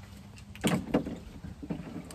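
A man puffing on a tobacco pipe: two short puffs, a quarter second apart, less than a second in, over a faint steady low hum.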